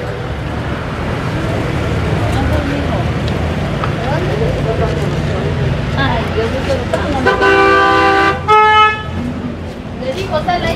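Street traffic with a steady low engine rumble and faint voices, then two car horn honks near the end: a long one about seven seconds in and a shorter, higher-pitched one right after it.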